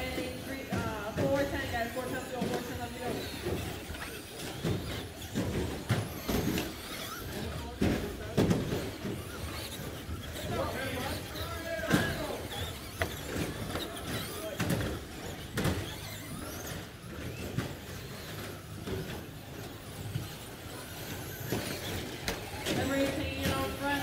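A pack of electric Traxxas Slash short-course RC trucks racing on an indoor carpet track: motors whining up and down as they accelerate and brake, tyres scrubbing, and irregular knocks from jumps, landings and contact.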